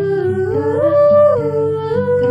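A woman's wordless singing, close to the microphone, carrying a melody that steps up to a held high note about a second in and then falls back.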